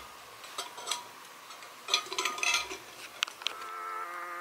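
A drink being sipped through a metal straw from a tumbler, with light clicks and clinks of the straw and cup as they are handled and a short burst of sipping about two seconds in.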